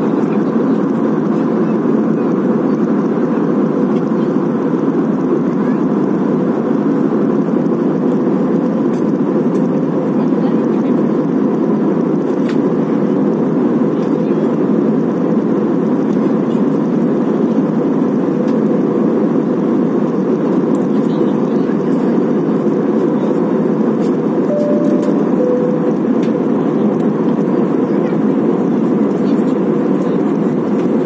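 Airbus A320-family airliner cabin noise during the climb after take-off: a steady, loud, low rush of jet engines and airflow that does not change.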